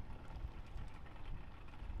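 Low, uneven outdoor background rumble with no single clear source.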